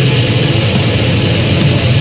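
Black metal: a dense wall of heavily distorted guitars and drums over a sustained low drone, played loud and without a break.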